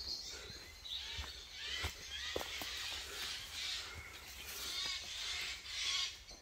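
Harsh, raspy bird calls repeating about once a second, a scratchy sound likened to a chainsaw and taken for two birds fighting. A few soft knocks sound among the calls.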